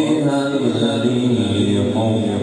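A man reciting the Quran in the melodic tajwid style of tilawat, drawing out one long, slightly wavering note.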